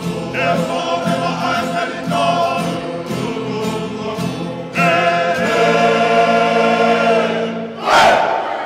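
A Tongan choir singing in harmony; about five seconds in the voices swell into a louder, long-held chord that dies away just before the end.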